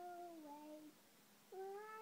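A young girl singing: one long held note that sags slightly in pitch, a short break, then a new note starting about one and a half seconds in.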